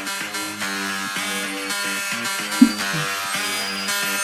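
Instrumental intro of a rap song, a beat of steady repeating synth-like notes, with one short loud hit about two and a half seconds in.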